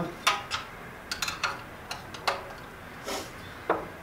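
Irregular sharp clicks and light metallic clatter from handling the air compressor motor's wiring cover plate and small tools on a tabletop, with one longer scrape about three seconds in.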